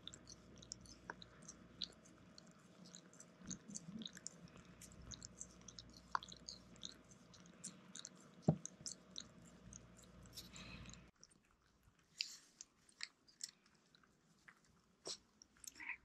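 Shiba Inu gnawing and licking a rubber treat toy: faint wet chewing with many small quick clicks of teeth on rubber. It stops about two-thirds of the way through, leaving only a few scattered clicks.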